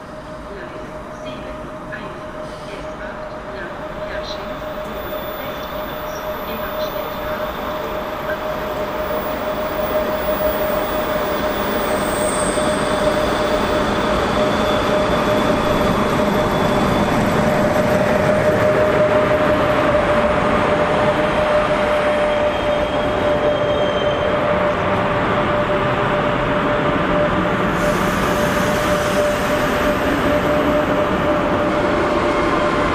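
Class 103 electric locomotive hauling passenger coaches slowly into the platform, its running noise growing steadily louder as it approaches and passes close by, with a steady whine throughout.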